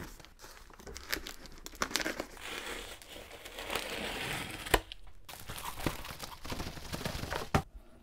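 Packing tape being sliced and torn off a cardboard shipping box with a utility knife, the tape and cardboard tearing and crinkling. A sharp crack about halfway through and another near the end.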